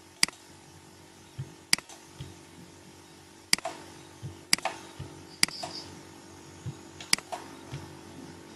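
Computer mouse button clicking, about six sharp clicks at uneven intervals, over a low steady hum.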